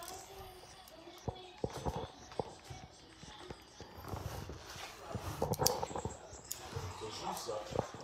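Low, indistinct voices in a quiet room with scattered light clicks and taps of handling, the clearest cluster about two seconds in and another near five and a half seconds.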